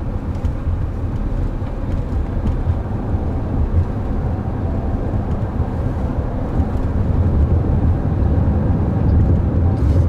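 Inside the cabin of a Chrysler Pacifica minivan driving on a city road: a steady low rumble of tyre and road noise, getting a little louder over the last few seconds.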